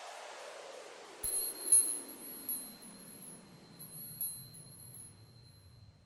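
Logo-sting sound effect: a few short, bright chime tinkles starting about a second in, with a high ringing tone under them, over a faint whoosh that falls steadily in pitch and fades.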